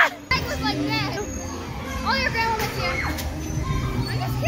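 Children's voices and shouts at play over the steady background hubbub of a busy indoor trampoline hall.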